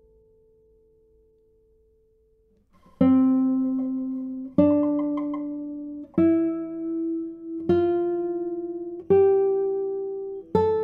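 A classical guitar's last note fades to near quiet. About three seconds in, the spruce-top Kazuo Sato Prestige 2022 classical guitar begins playing slow plucked notes, one about every second and a half, each left to ring, stepping upward in pitch.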